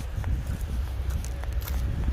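Footsteps on a snowy, icy path, a few faint crunches over a steady low rumble of wind on the phone microphone.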